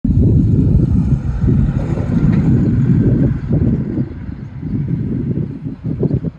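Wind buffeting the microphone: a loud, gusty low rumble that eases after about four seconds.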